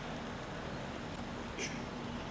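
Steady outdoor background noise with a faint low hum, and one short, sharp high-pitched sound near the end.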